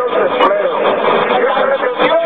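A person's voice, loud and continuous, with the pitch bending up and down.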